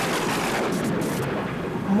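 Storm sound effect of a cartoon hurricane: a steady rush of wind and heavy rain, its hiss thinning somewhat past the middle.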